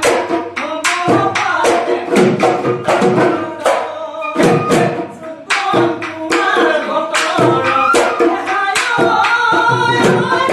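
Men singing a Bihu song in Assamese, accompanied by a dhol drum beating a steady, fast rhythm of about three strokes a second.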